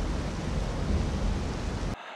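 A steady rush of noise like static or surf, heaviest in the low end, that cuts off abruptly near the end.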